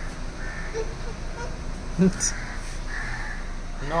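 A bird cawing in several short, harsh calls spread across a few seconds.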